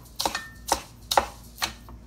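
Metal spoon scraping and clinking against a ceramic bowl while stirring a dry mix of kosher salt and ground white pepper, in short repeated strokes about two a second.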